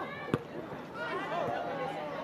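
A single sharp thud of a football being struck in the penalty area about a third of a second in, followed by shouting voices on the pitch and in the stands.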